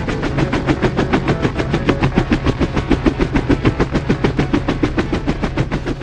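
Edited soundtrack of a rapid, even chopping rhythm, several beats a second, over a steady low hum.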